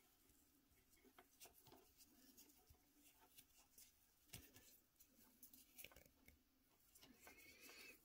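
Near silence, with faint scattered rustles and light clicks of hands handling a piece of shock cord.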